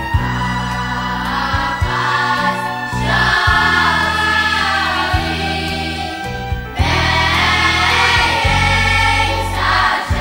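Boys' choir singing a song together over an instrumental backing with a steady bass line.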